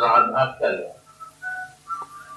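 A man's voice in the first second, then faint short whistle-like tones.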